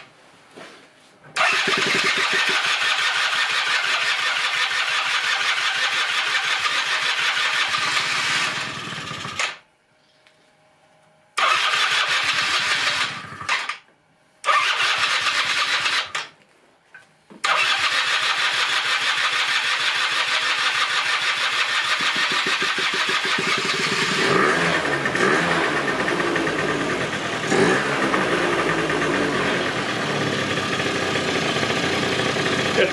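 The 1996 Rexy 50 scooter's two-stroke engine, running for the first time after 13 years in storage. It catches about a second in, then cuts out and restarts three times (around 9, 13 and 16 seconds), and runs on continuously from about 17 seconds. Over the last few seconds its note turns deeper and uneven.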